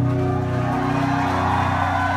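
Amplified electric guitars holding sustained, ringing chords with no drumbeat.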